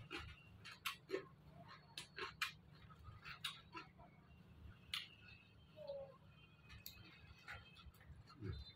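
Quiet eating sounds: irregular soft clicks and smacks of chewing, with fingers mixing rice on a plate.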